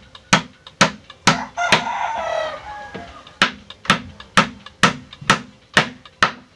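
Hammer blows on a wooden chair frame, about two a second, nine strikes with a break in the middle. In that break a rooster crows once, for about a second and a half.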